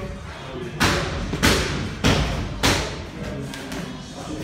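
Four strikes landing in light kickboxing sparring, sharp thuds of gloves and kicks on a guard or body, about two a second.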